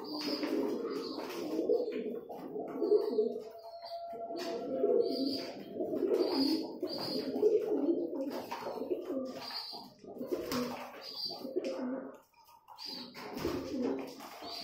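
Flock of domestic pigeons cooing over one another almost without a break, with short clicks of beaks pecking seed from a plastic feeding tray.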